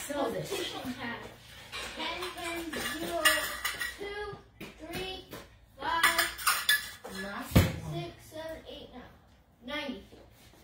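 Metal dumbbells clinking and clanking as they are handled at a rack, with one sharp knock about three-quarters of the way through. Children's voices chatter in the background.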